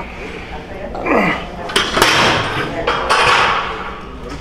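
Sharp metallic clanks of gym weight equipment, two close together about two seconds in, amid voices and a rush of noise.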